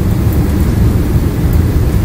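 Steady, loud low rumble of classroom background noise.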